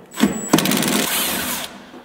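Cordless impact driver backing out a bolt on the Jeep JK tailgate's door hardware: a short blip, then about a second of rapid hammering that fades away near the end.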